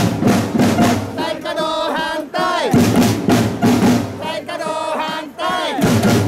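Street protest drums beating a steady rhythm of about four strokes a second, alternating with loud chanted calls from the marching crowd. The calls end on a falling pitch about two and a half seconds in and again near the end.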